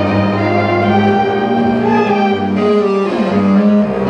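Eighth-grade concert band of clarinets, saxophones and brass playing a piece, moving through sustained chords over a low bass line that briefly drops out past the middle.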